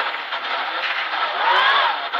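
Rally car engine heard from inside the cabin, running off the throttle as the car slows for a tight turn, with a brief rise and fall in revs about one and a half seconds in as it shifts down into second gear. Tyre and gravel road noise runs underneath.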